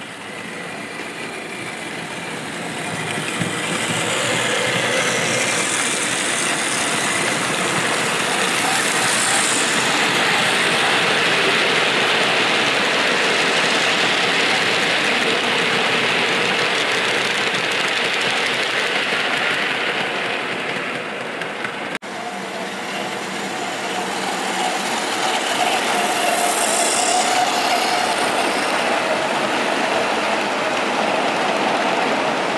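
OO gauge model goods train of old tinplate-era wagons rolling past on the track: a steady clatter and rumble of wheels on rails that builds, holds as the train passes close and fades. After a sudden break about two-thirds through, it builds again as the train comes round a curve, with a faint steady hum.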